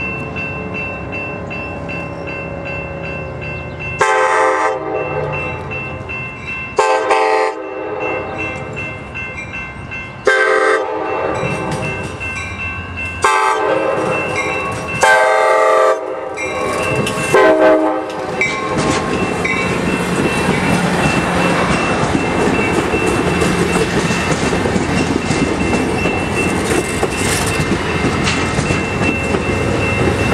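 Passenger train's horn sounding six separate blasts of varying length on approach to a grade crossing, with a crossing signal's bell ringing steadily underneath. From about 19 seconds in, the bilevel cars roll past close by, their wheels running on the rails in a steady loud rush.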